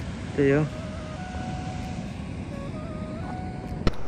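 Steady rushing outdoor background noise with faint held tones that change pitch in steps. A short spoken word comes about half a second in, and a click comes near the end.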